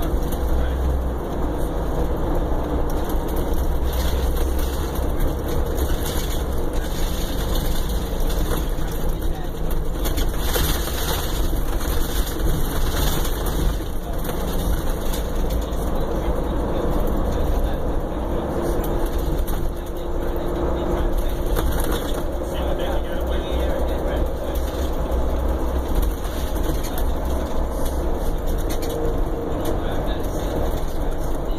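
Cabin sound of a Prevost commuter coach on the move: a steady low engine drone and road noise, with light rattles and clicks from the body and fittings.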